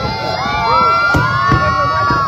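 A large crowd of spectators cheering and shouting together. Many voices swell into a sustained cheer about half a second in and hold it, with firework bursts banging over it.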